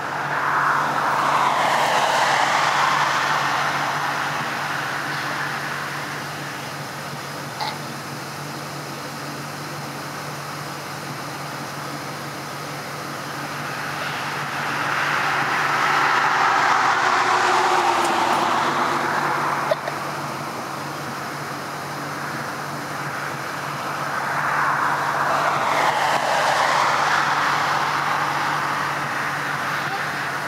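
Road vehicles passing three times, each swelling and fading over a few seconds, over a steady low engine hum.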